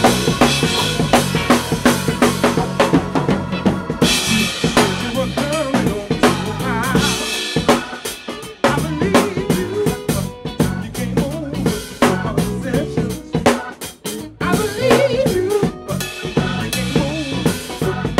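Funk band playing live, the drum kit loudest and closest: snare, kick drum and cymbals over bass and electric guitar. The low end drops out briefly twice, once around the middle and once about three-quarters through.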